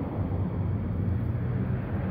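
A steady low hum under an even background rush of noise, with no distinct events.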